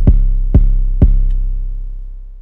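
Trap kick drum layered with an 808 bass, playing back from a step-sequencer pattern. Three hits come about half a second apart, each followed by a long, low, sustained bass note, and the last one slowly fades out.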